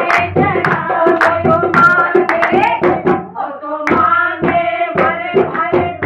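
Women singing a Haryanvi Shiv bhajan in chorus, kept in time by steady hand clapping and a dholak. The singing breaks off briefly a little past the middle, and the clapping carries on when it comes back.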